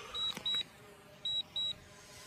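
Drone flight app's auto-landing alert: short high electronic beeps in pairs, a pair about every second, sounding while the drone descends on its own after signal interference forced a return to home.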